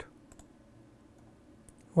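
A few faint computer mouse clicks: two close together about a third of a second in, another near the end.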